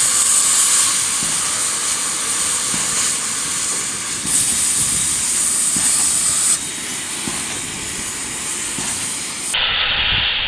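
Gas cutting torch hissing steadily as its flame works on steel pipe, the hiss louder for a stretch in the middle.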